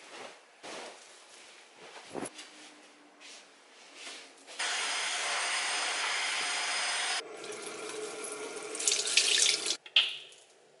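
Bedding rustling in a few soft swishes, then a stick vacuum cleaner running steadily for a couple of seconds and cutting off suddenly. After it a tap runs into a bathroom sink, splashing louder near the end.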